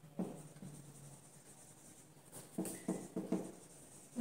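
Marker pen writing on a whiteboard: a few short strokes, one just after the start and a quick run of them in the second half.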